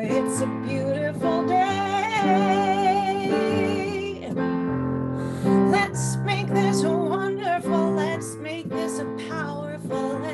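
A woman singing a song with vibrato over instrumental accompaniment.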